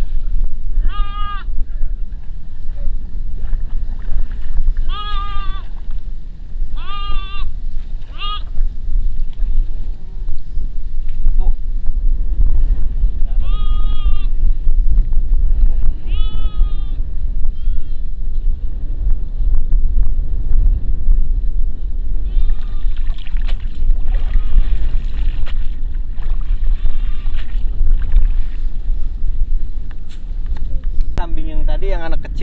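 A goat bleating again and again, several wavering calls in the first half and fainter ones later. It is a goat that cannot get across the water. Wind rumbles on the microphone throughout.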